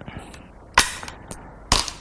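Go stones placed on a wooden Go board: two sharp clacks about a second apart, with a few fainter clicks.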